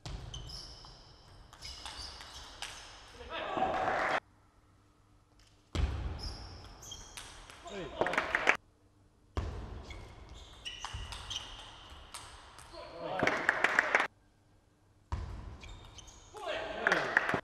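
Table tennis rallies in a large hall. The ball clicks rapidly off the bats and the table, and shoes give high squeaks on the court floor. Each rally ends in a loud shout, and the rallies are separated by brief gaps of near silence.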